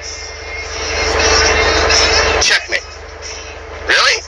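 Vehicle noise heard from inside a truck cab: a rushing swell with a steady hum that builds over the first second, holds, and cuts off sharply about two and a half seconds in.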